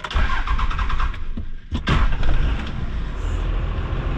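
5.9 Cummins 12-valve diesel, heard inside the cab, cranked on the starter for about a second and a half after stalling, then firing and settling into a steady run. The truck stalls much more easily since its governor springs and fuel plate were changed.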